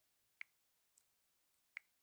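Two short, sharp clicks about 1.3 seconds apart, with a fainter tick between them, over near silence: taps on a phone touchscreen selecting an option in an app menu.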